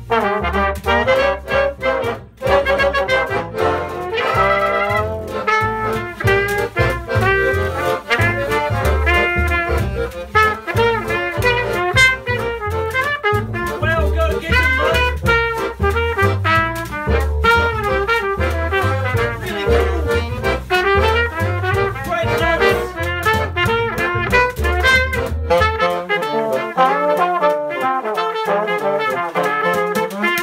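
Small acoustic jazz band playing an instrumental passage: trumpet, trombone and saxophone over guitar, accordion, double bass and brushes on a suitcase. The low bass line drops out about four seconds before the end.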